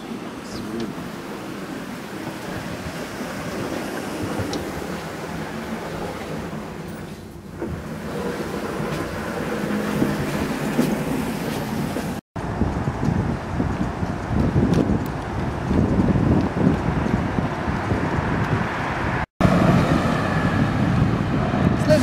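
Indoor ambience gives way to steady city street traffic noise from passing cars, louder in the second half. The sound cuts out briefly twice.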